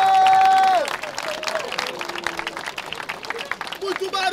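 A long held shout that breaks off just under a second in, then a crowd applauding and clapping with scattered voices.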